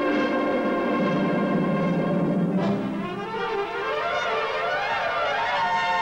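Full brass band playing: a held chord, then a sudden new entry about halfway in, with runs of notes climbing and falling across the band.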